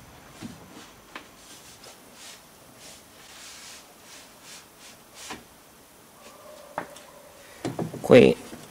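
Faint scattered clicks and soft rubbing and sliding as the door glass and the parts inside a stripped car door are handled, with a few sharper clicks near the end.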